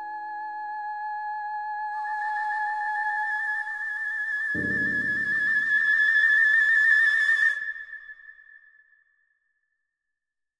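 Flute holding a high note with vibrato and breathy air noise over steady electronic tape tones. A low, dense tape cluster enters about four and a half seconds in, then everything stops at once about three seconds later and dies away into silence, ending the piece.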